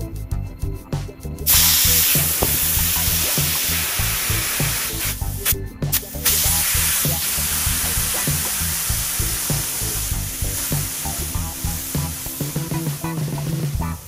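Compressed air hissing loudly out of an air-suspension system as the pressure in its air springs is changed. The hiss starts suddenly about a second and a half in, breaks off briefly near the middle, then carries on.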